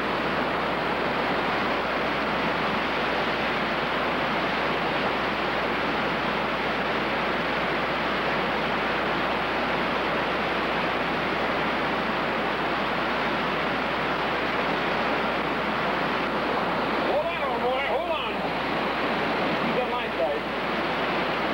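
Steady rush of stream water tumbling over rocks in white-water rapids.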